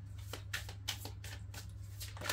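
A deck of tarot cards being shuffled by hand: a handful of short, crisp card flicks spread through the moment, over a steady low hum.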